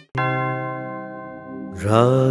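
Buddhist chanting by a man's voice: one long low held note that fades slowly, then the next phrase begins with a slide in pitch near the end.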